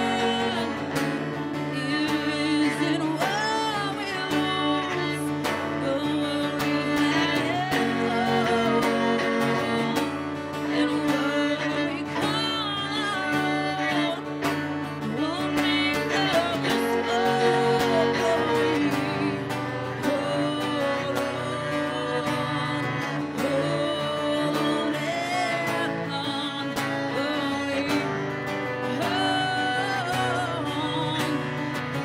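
A woman singing, accompanied by a strummed acoustic guitar and a bowed cello, in a folk/country style.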